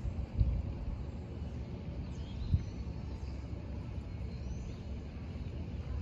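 Outdoor ambience dominated by a steady low rumble on the microphone, with two dull thumps, one about half a second in and one about two and a half seconds in, and a few faint high chirps above it.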